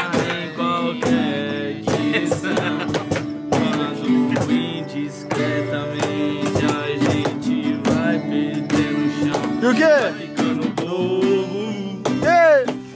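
Acoustic guitar strummed steadily in chords, with men singing a romantic song along with it.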